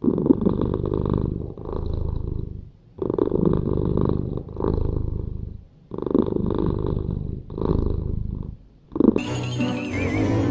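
A cat purring in long, rough cycles, broken by short pauses every one to three seconds.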